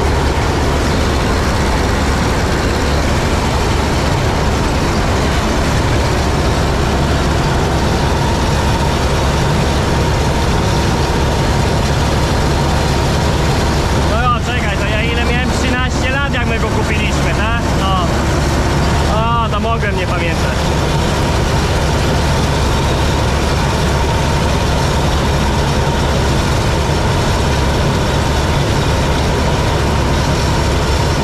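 Massey Ferguson 86 combine harvester running under load while cutting grain, heard from inside its cab as a loud, steady mechanical din with a constant hum. About halfway through, a few seconds of wavering higher-pitched sound rise over it.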